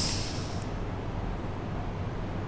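A short hiss of compressed air exhausting from a pneumatic valve as the double-acting cylinder strokes, dying away within about half a second, then a low steady hum.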